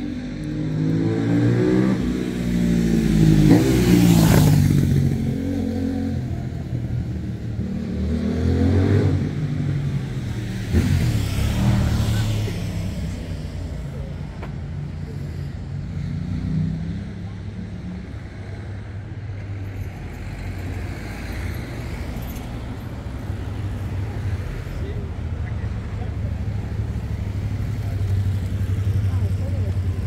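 Road traffic: motor vehicles passing close by one after another, engine pitch rising and falling as each goes past. The loudest pass is about four seconds in, with others around nine and twelve seconds, then a steady low engine hum.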